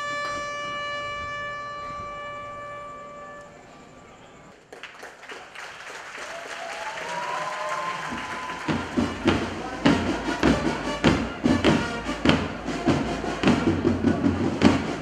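A trumpet holds one long note that fades away in the first few seconds. After that, crowd noise rises, and from the middle on there is a steady beat of thumps about two a second from a column of soldiers marching in step.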